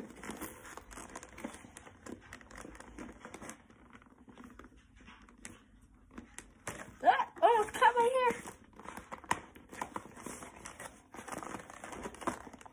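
Plastic toy packaging crinkling and tearing, with cardboard rustling and scissors at work, as a Breyer figure is freed from its box. The handling comes in short bursts of rustles, with a quieter spell around the middle. A brief voice sound about seven seconds in is the loudest part.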